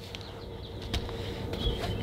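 Quiet handling of cardboard LP record sleeves: a faint rustle and a few light taps as a sleeve is set down against a shelf, over a faint steady room hum.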